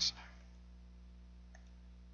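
Near silence of room tone after a spoken word ends, with a single faint computer mouse click about one and a half seconds in.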